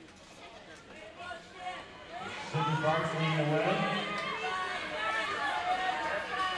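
Speech: a voice talking over low crowd chatter, growing clear and louder about two and a half seconds in.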